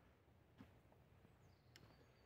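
Near silence: faint outdoor background with two soft clicks, one about half a second in and one near the end.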